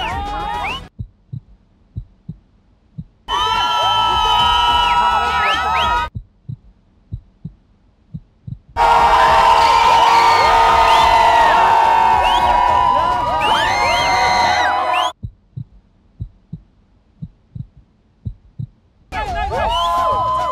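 A suspense heartbeat sound effect, low thuds in lub-dub pairs, sounds in the quiet gaps. It alternates with loud bursts of many people shouting and cheering; the longest burst runs from about 9 to 15 seconds in.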